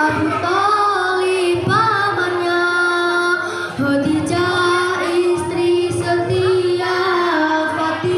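Young schoolgirls singing a melodic song into a microphone, with long held notes.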